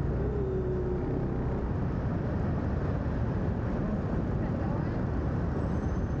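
Scooter engine running at low speed, a steady low rumble with no revving.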